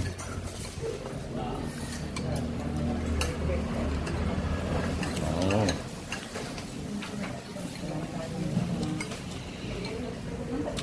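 Spoon and cutlery clinking against ceramic soup bowls and plates while eating, with voices in the background. A low steady hum runs underneath and stops about halfway through.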